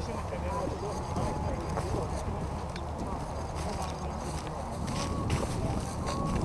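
Indistinct chatter of a group of people a little way off, with footsteps in dry grass and a steady low rumble of wind or handling on the microphone.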